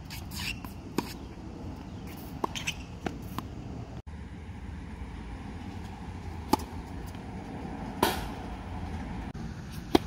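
Tennis balls struck by rackets and bouncing on a hard court during play, a string of sharp pops a second or more apart, including a serve hit about two-thirds of the way through, over a steady outdoor background hum.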